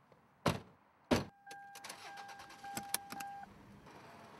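Someone getting into a car: two heavy thuds of the car door and body, then a steady electronic warning tone from the car for about two seconds, with small clicks and rattles over it.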